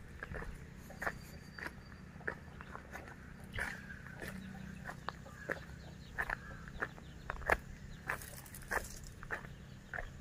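Footsteps crunching on dry ground and fallen coconut fronds, soft irregular crunches about twice a second, over a faint low hum.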